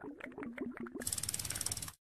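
Title-animation sound effect: a run of quick clicks over a short wavering tone, then about a second of fast, even, ratchet-like ticking that stops suddenly.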